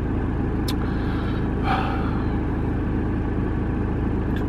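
Van engine idling while stopped in traffic, heard from inside the cab as a steady low rumble. There is one light click under a second in.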